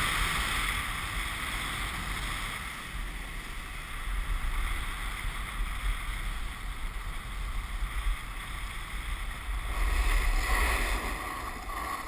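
Wind buffeting the microphone of a fast-moving camera, over a steady hiss of sliding across packed snow; the rush grows louder about ten seconds in.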